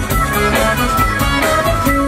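Live rock band playing: hollow-body electric guitar picking out notes over bass guitar and a drum kit keeping a steady beat, with no singing yet.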